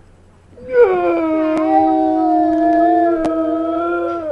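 A little girl's long, steady "oooh" howl, held at one pitch for over three seconds, starting about half a second in. Two faint clicks sound during it.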